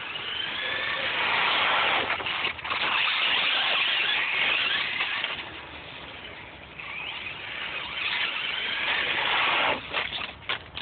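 Traxxas Stampede VXL radio-controlled truck's brushless electric motor whining as the truck speeds up and slows, its pitch rising and falling. There are two loud runs with a quieter dip between them, and the second cuts off sharply just before the end.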